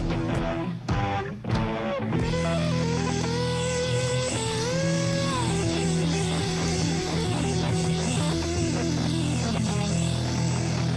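Live hard-rock band, electric guitars, bass and drums with cymbals, playing the closing bars of a song. Drum strokes with two short breaks come in the first two seconds, then a held chord with a guitar note gliding up and back down about five seconds in.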